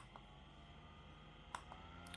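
Near silence, with faint clicks of the NUUK FŌLDE fan's speed button about one and a half seconds in, over a faint, slowly rising whine of its brushless (BLDC) motor spinning up.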